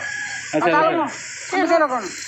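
A bird calling: two short bursts of rapid pitched notes, each rising and falling, about half a second in and again near the end.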